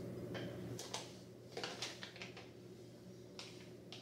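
Faint handling noise of string being worked by hand: scattered small clicks and ticks, clustered in the middle and again near the end, over a low steady hum that drops away about a second in.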